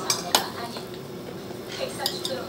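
Fingers working food on a ceramic plate, with two sharp clicks against the plate in the first half-second, the second the loudest, then lighter scraping and ticking.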